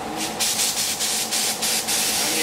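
Compressed-air gun blowing dust and dirt out of a car's engine bay, its hiss pulsing in rapid short blasts, about five a second.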